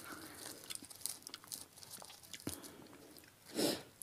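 Faint, close-miked crackles and small clicks of fresh herb sprigs being snapped and torn by hand, with one sharper tick about halfway through and a brief louder hiss-like burst near the end.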